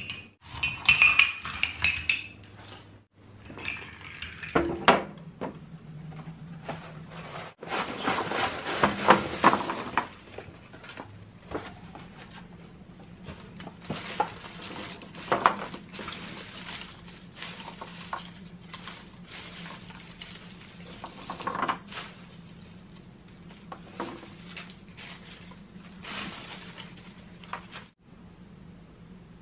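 A metal spoon stirring Vietnamese iced coffee in a glass mug, clinking against the glass for about two seconds. Scattered short rustles and light knocks follow.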